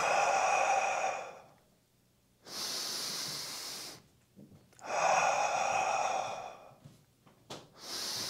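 A man breathing hard and audibly, paced to slow split-squat reps: a long exhale for about the first second and a half, a hissier inhale around the third second, another long exhale between about five and seven seconds, and a new inhale starting at the end. He exhales as he drives up and inhales as he lowers.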